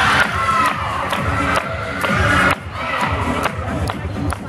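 Women's handball team shouting and cheering together in a huddle, their high voices mixed with hand claps.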